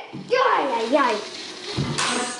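A child shouting "Yay!", followed by rough rustling noise and a low thump near the end.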